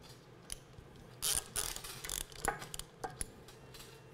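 Hand-operated chain fall being worked to take up the slack and tighten the chain: irregular ratchet clicks and chain rattling, with a longer rattle from about one to two seconds in.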